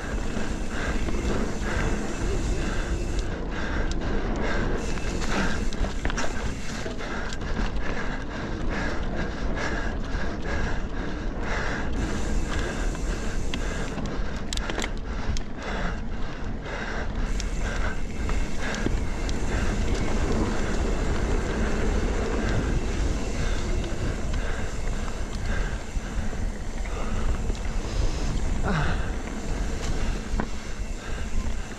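Mountain bike ridden fast down a dirt singletrack: wind buffeting the microphone, tyres rolling over the dirt and the bike rattling and clicking steadily over the bumps.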